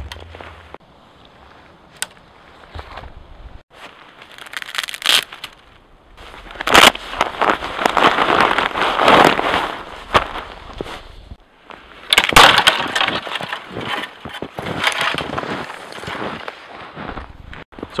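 Small dry dead twigs being snapped off the lower branches of an eastern white pine by hand: a run of sharp cracks, sparse at first, then dense crackling and rustling for most of the second half.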